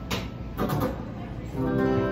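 Hollow-body electric guitar strummed to check its tuning: two quick strums, then a chord that rings out from about a second and a half in.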